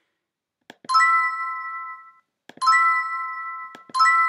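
Online scratchcard game's reveal chime, a bright bell-like ding of a few notes at once that rings out and fades, sounding twice about a second and a half apart as hidden numbers are uncovered, with a third starting at the very end. A short click comes just before each chime.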